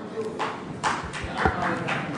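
Scattered knocks and shuffling of an audience taking their seats in a hall, with a faint murmur of voices.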